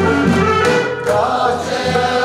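A choir of mostly women's voices singing together in held, sustained notes.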